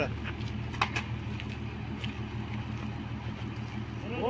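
A vehicle engine idling steadily as a low hum, with a couple of light clicks about a second in.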